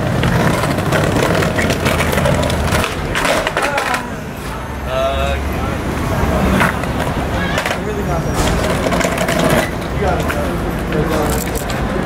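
Skateboard wheels rolling over brick paving in a steady rumble, broken by a few sharp clacks of the board, a cluster of them about three seconds in.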